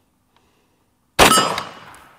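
A single shot from an M1 carbine firing .30 Carbine 110-grain ball, about a second in, with a metallic ring as the bullet passes through the target and strikes a steel plate behind it. The ring dies away within a second.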